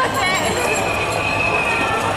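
A crowd of bicycles rolling over stone paving, with riders' voices. About half a second in, a high steady squeal starts and is held for just over a second.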